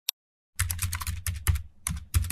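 A rapid run of sharp clicks, like typing on a keyboard, with a low hum underneath. It starts about half a second in, after a moment of dead silence.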